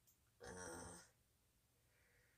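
Near silence, broken about half a second in by a woman's brief wordless vocal sound, a short sigh-like utterance lasting under a second.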